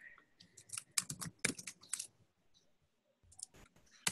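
A quick run of sharp clicks in the first two seconds, then a few more near the end, at a low level.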